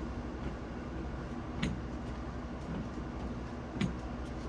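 Steady low rumble of outdoor background noise, with a single sharp click about one and a half seconds in and a short soft sound near the end.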